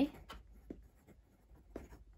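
A pen writing on lined notebook paper: faint, quick scratching strokes as a handwritten line of words goes down.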